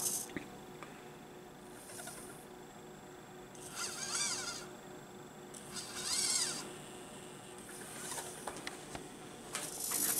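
Hobby servo motors of a 3D-printed EEzyBotArm 2 robot arm whining faintly in several short bursts a couple of seconds apart, the pitch of each rising and falling as the arm swings, lifts and grips.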